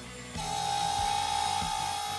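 Handheld router starting about a third of a second in and running with a steady high whine as it cuts a chamfer on the corner of a wooden board. Background music with a beat plays underneath.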